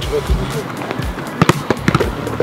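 Background music, with a quick run of sharp knocks near the end: a football being kicked and passed.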